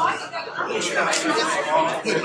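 Several people talking at once in a lecture hall: overlapping conversation among a crowd breaking up after a talk.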